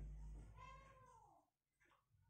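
A faint animal cry, one call that rises and then falls in pitch, about half a second in.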